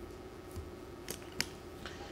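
Quiet pause: a faint steady hum with four short, sharp clicks spread across two seconds, small handling noises of a pen and tablet at a desk.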